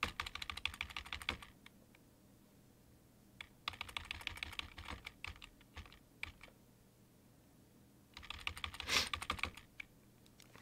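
Computer keyboard keys pressed in rapid runs of clicks, in three bursts: at the start, in the middle, and near the end.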